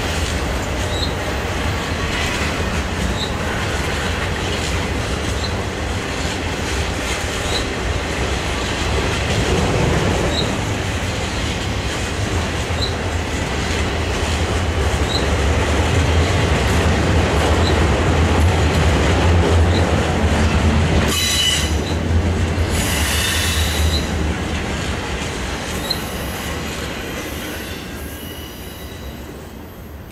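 Freight train cars rolling past with a steady heavy rumble and rattle of wheels on rail, broken by short high wheel squeals every second or two. A longer burst of squealing comes about two-thirds of the way in, then the sound fades as the train moves away.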